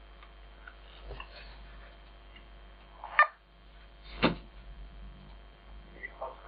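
A faint steady electrical hum broken by short sharp clicks: a small one about a second in, the loudest about three seconds in, when the hum briefly cuts out altogether, and another about a second after that.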